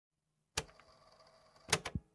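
A sharp click about half a second in, with a faint ringing tail, then two quick clicks near the end: the sound effects that open a rap track, before the beat comes in.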